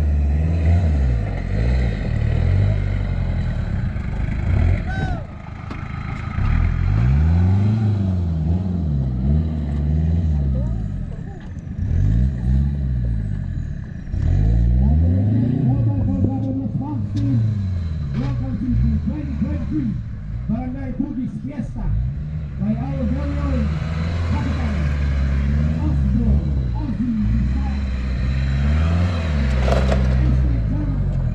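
Engine of a compact 4x4 on oversized mud tyres revving up and dropping back again and again as it is driven slowly over steep dirt mounds on an off-road course.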